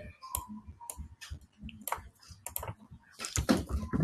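Typing on a computer keyboard: irregular single keystrokes, then a quicker run of keys near the end.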